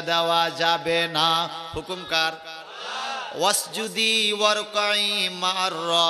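A man's voice chanting in a drawn-out melodic tune, holding long notes, with a brief break about halfway and a rising slide into the next phrase.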